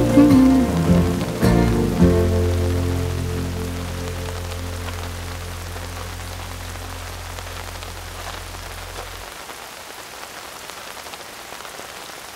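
Steady rain falling, under background music that ends on a long low held note, fading away and stopping about nine seconds in and leaving only the rain.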